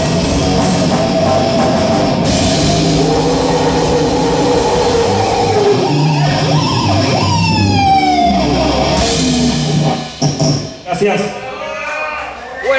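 Heavy metal band playing live: distorted electric guitars, bass and drum kit with a vocalist, loud and dense, with a long falling pitch slide about seven seconds in. The song ends about ten seconds in, leaving voices and uneven bursts of sound.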